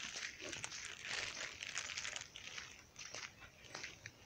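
Footsteps on a dry dirt trail with rustling of dry scrub: a scatter of faint, irregular crunches and crackles.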